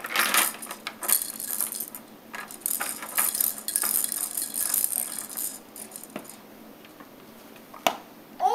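Plastic clicking and rattling from a baby's ball-drop activity toy being handled, small plastic balls knocking in its cup and ramps. It thins out after about six seconds, with one last click near the end.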